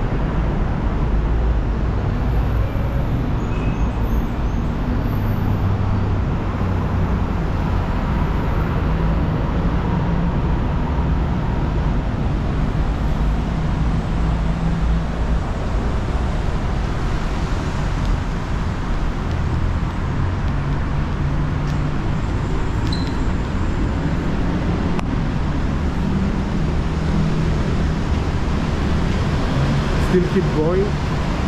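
Steady city road-traffic noise from the street below, with a low rumble of wind on the microphone.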